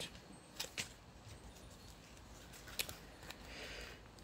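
Quiet room with a few short, faint clicks and taps of small objects being handled, two close together near the start and two more later on.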